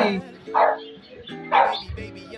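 Background music with steady held tones, and a dog barking twice, about half a second and a second and a half in.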